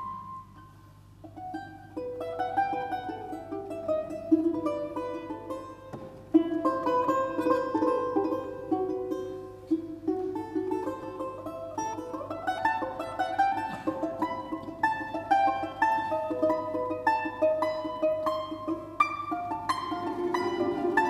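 Solo balalaika playing a melody in fast tremolo, backed by a Russian folk-instrument orchestra of balalaikas and domras. It starts softly, grows louder after about two seconds, and climbs in a rising run about twelve seconds in.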